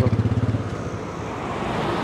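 A motorcycle engine running nearby, its regular low pulsing fading out within the first second, leaving steady road traffic noise.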